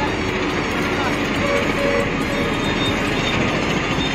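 Steady rumble of heavy road traffic, trucks among it, passing on the highway beneath a steel footbridge.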